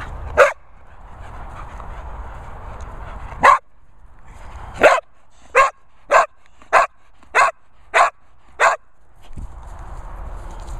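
English springer spaniel barking: two single barks, then a steady run of seven barks about 0.6 s apart.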